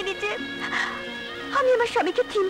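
A woman crying and wailing in distress, her voice wavering up and down, in two spells: one at the start and a louder one near the end. Sustained notes of a background film score run underneath.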